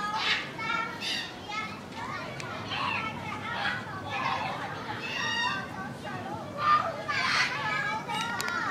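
Children chattering and calling out in high voices the whole time, with a louder shout about seven seconds in.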